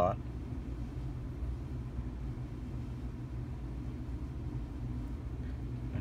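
Steady low background hum and rumble with no distinct events: the light brush strokes of the painting are not heard over it.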